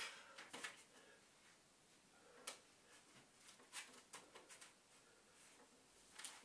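Near silence, broken by a dozen or so faint, short taps and rustles as a man sets his hands on the floor and moves into a push-up position.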